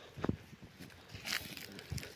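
A few scattered footsteps and rustles on dry ground and leaves: separate short crunches and scuffs, one near the start, a hissy one in the middle and another near the end.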